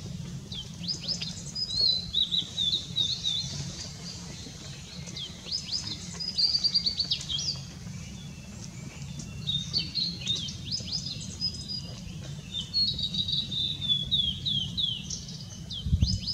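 Male blue-and-white flycatcher singing from a treetop: four phrases of high, clear whistled notes with quick downward slurs, each a couple of seconds long, separated by short pauses.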